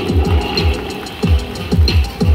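Stadium public-address music with a heavy electronic beat, a run of deep drum hits with falling-pitch bass sweeps.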